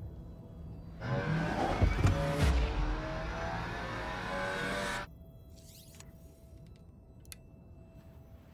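A low ambient music drone, broken about a second in by a loud car engine revving, its pitch rising and falling, with a couple of heavy hits. The engine is the Škoda Octavia RS 245's, and it cuts off abruptly after about four seconds. The drone returns with faint whooshes and a couple of sharp clicks near the end.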